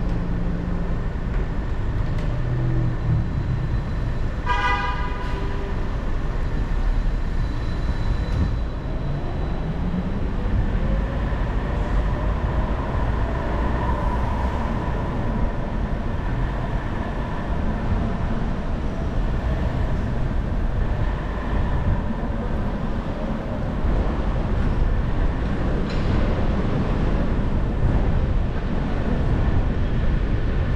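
Steady low rumble of a car driving through city street traffic, with a short car-horn toot about four or five seconds in.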